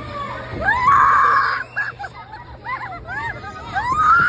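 Children laughing and shrieking excitedly, with one long high-pitched squeal about a second in and shorter squeals after it.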